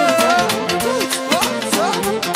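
Live manele band music: a violin plays a sliding, ornamented melody over a steady, driving beat.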